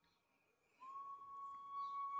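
Near silence in a pause of speech. About a second in, a faint, steady, high whistle-like tone begins and holds.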